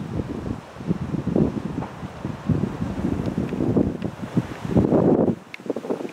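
Wind buffeting the camera microphone in uneven gusts, a rough low rumble that drops away sharply near the end.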